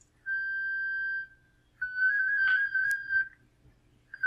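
Thor 50x2 digital-mode audio from FLDigi. A steady carrier tone sounds for about a second, then after a short gap a tone hops rapidly among closely spaced pitches as the data is sent, like R2-D2. A brief click comes near the end.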